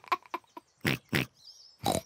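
Several short pig snorts voiced for cartoon pig characters, each a brief separate burst.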